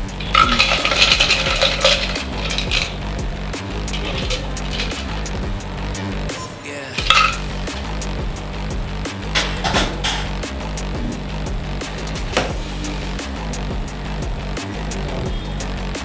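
Background music with a steady beat over the clinks of a metal cocktail shaker and fine strainer against glass. Near the start, liquid pours from the shaker through the strainer into a stemmed glass.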